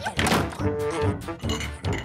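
Music with sustained string-like tones, over which come repeated short thunks in rhythm, a kitchen knife chopping carrots on a cutting board.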